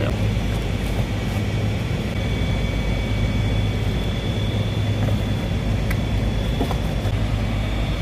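Steady drone of rooftop air-conditioner outdoor units running: a low, even hum with faint steady high tones above it and a few faint clicks.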